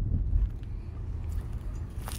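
Low, steady rumble of city traffic, a little louder in the first half second.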